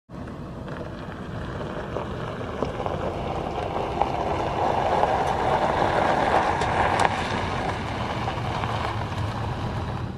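A Ford Econoline van driving up over gravel, its engine running and tyres crunching, with a few small pops of stones. It grows louder as it approaches, is loudest about five to seven seconds in, then stays steady as it pulls up close.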